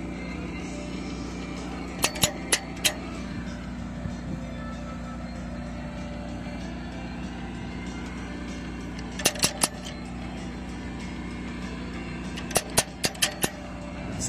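Short runs of sharp metallic clicks, three bursts of four to six, from a ratcheting chain hoist being worked to lever a cracked steel ramp frame back into line. A steady engine hum runs underneath.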